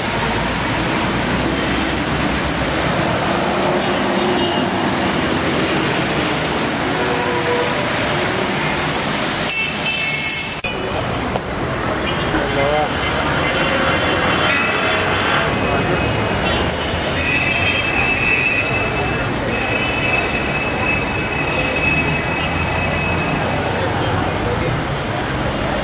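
Busy city street traffic on a wet road: a steady wash of cars and buses passing, car horns sounding several times in the second half, and people's voices in the street.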